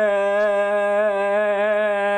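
A man's voice holding one long sung note on a drawn-out "gaaay", steady in pitch with a slight waver.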